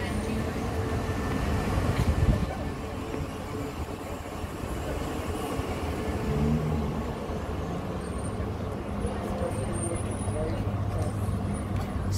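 City street ambience: a steady low vehicle rumble with passers-by talking.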